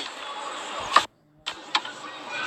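Car interior noise with the engine running, steady and low. A click about a second in, then the sound drops out for a moment before resuming.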